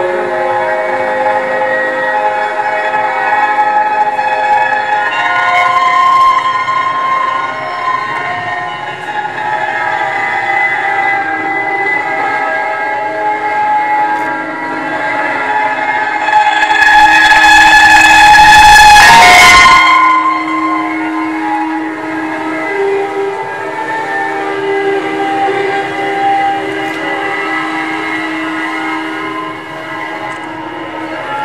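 Amplified strings of a stripped grand-piano frame, worked by hand to make layered, sustained drone tones that shift slowly. About halfway through, a loud, harsh swell builds over a couple of seconds, then cuts off, and the steady tones carry on.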